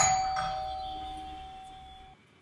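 Bell chime: struck notes about half a second apart, the last one ringing on as a single steady tone that fades away over about two seconds.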